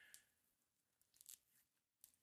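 Near silence: room tone with two faint, brief rustles, one just after the start and one a little past the middle.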